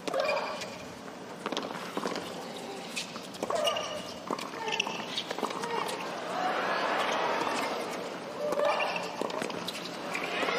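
Tennis rally: a ball being struck by rackets and bouncing on the court, heard as sharp pops every second or so, over crowd noise that swells in the second half as the point goes on.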